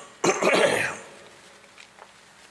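A man coughs near the start: a brief burst, then a rougher one lasting most of a second.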